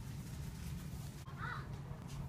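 Busy shop's background noise, a steady low hum, with one brief faint high-pitched squeal about a second and a half in.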